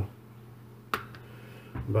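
A single sharp click about halfway through from a handheld needle meat tenderizer being worked on a steak, over a low background hum.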